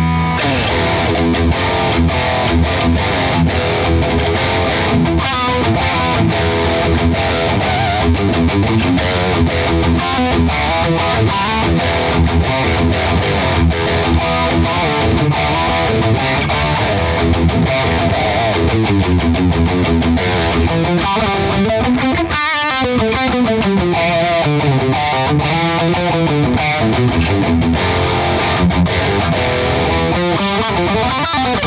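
Distorted electric guitar played through a guitar amp and cabinet, riffing continuously. Held notes waver and bend in pitch for several seconds in the last third.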